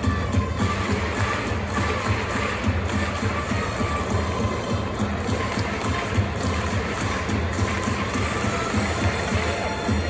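Organised stadium cheering music: trumpets and drums with the crowd chanting along in a steady, continuous beat.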